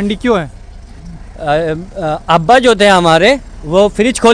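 A person's voice talking in short, animated phrases, over a faint steady low hum.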